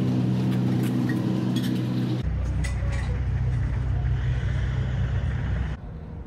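A motor vehicle engine idling with a steady hum. About two seconds in, it cuts abruptly to a deeper, steady engine hum, which drops away just before the end.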